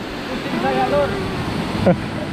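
A man's voice speaking briefly over a steady rushing noise from the river.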